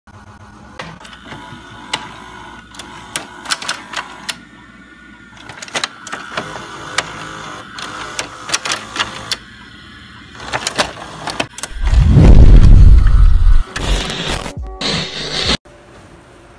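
Edited intro soundtrack for a VHS-style playback effect: music mixed with many sharp clicks and mechanical whirring. A very loud deep rumble comes about twelve seconds in, followed by noisy bursts, and the sound cuts off abruptly just before the end.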